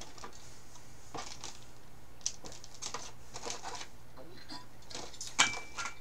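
Snack wrappers crinkling and rustling as they are dug through in a cardboard box, with scattered soft clicks and one sharper click near the end.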